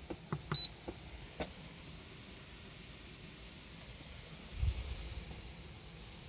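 Clicks of a Simrad autopilot controller's rotary knob being pressed, with one short high beep from the unit about half a second in. A brief low rumble follows near the end.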